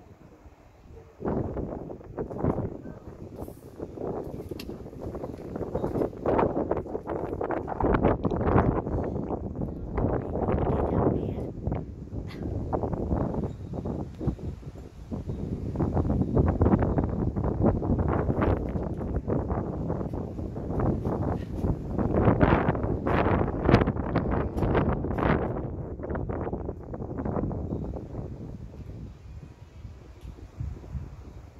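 Wind buffeting a phone's microphone in irregular gusts, a loud rumbling that swells and drops throughout.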